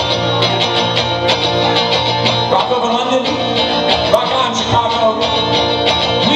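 Live electric guitar played through an amplifier, steady rock-and-roll strumming in a fast, even rhythm.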